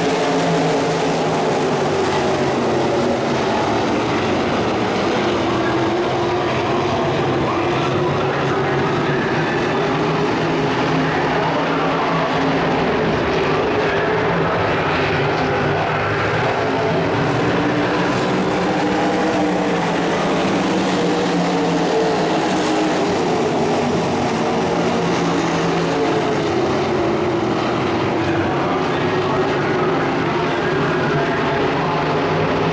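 A field of winged sprint cars racing on a dirt oval, several methanol-burning V8 engines running hard together without a break. Their pitch rises and falls as the cars go through the turns.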